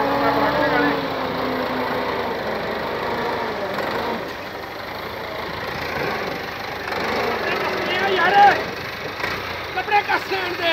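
Farm tractor engine running steadily as it drags a scraper through a heap of wheat straw, with voices over it and a louder call about eight seconds in.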